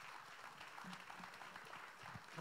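Faint applause from a church congregation.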